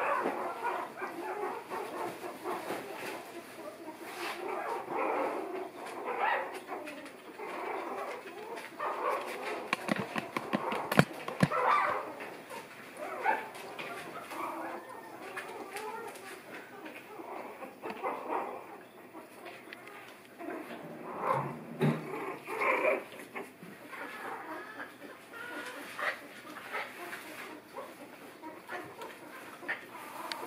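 Three-week-old puppies whimpering and squeaking in short, irregular high-pitched cries, with a few sharp clicks about ten seconds in.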